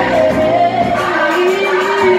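A woman singing live into a microphone over amplified backing music, holding a long note in the second half.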